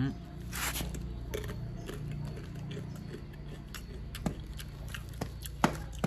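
Crunchy bim bim snack being chewed close to the microphone: scattered crunches and sharp clicks, with a short rustle of the snack bag about half a second in, over a steady low hum.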